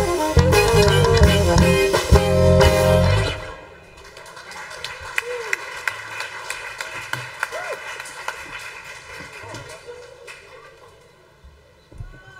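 Live band of saxophone, keyboard, bass guitar and drum kit playing loudly, then stopping suddenly about three seconds in as the song ends. After it, faint scattered clapping and a few voices.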